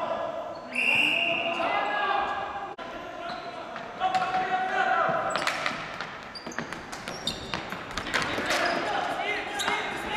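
A referee's whistle blows once, about a second in, then ball hockey play goes on in an echoing gym: sticks and ball knocking on the hardwood floor, sneakers squeaking and players shouting.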